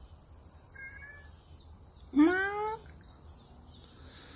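A domestic cat meows once, about two seconds in: a single call of well under a second that rises in pitch.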